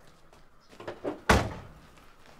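A car door, the minivan's, slammed shut a little past halfway through, after a couple of lighter knocks.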